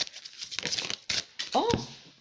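Oracle cards being shuffled by hand: quick papery clicks and rustles, with a sharper snap about a second in. A woman's surprised "Oh" comes near the end.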